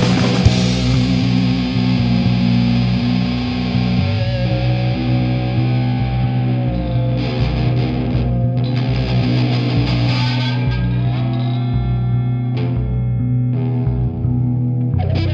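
Instrumental rock passage: distorted electric guitar run through effects over long held bass notes. A crash at the start rings away in the first couple of seconds, and drum hits come back in near the end.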